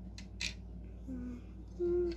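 Two light clicks, then a child humming a short note about a second in and starting to hum a gliding tune near the end, over a steady low electrical hum.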